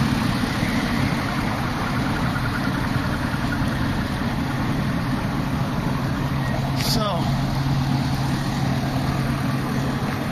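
A motor engine running steadily with a low rumble and a constant low hum. About seven seconds in, a brief sharp sound slides down in pitch.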